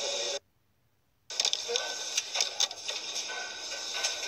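Cosmetics factory production line running: a dense machine din with steady high tones and repeated small clicks and clatter, with music under it. A gap of silence about a second long breaks it just after the start.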